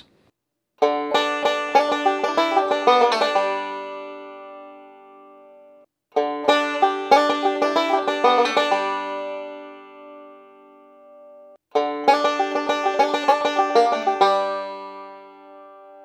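Five-string bluegrass banjo playing three short rolling backup licks over a D chord, each a quick run of picked notes with hammer-ons and pull-offs that rings out, fades and is cut off before the next.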